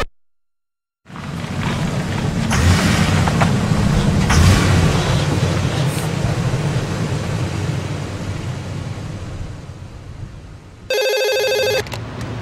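A low, noisy rumble of a vehicle on the move, with a few sharp knocks, fades slowly. Near the end a desk telephone rings once with a fast electric-bell trill lasting about a second.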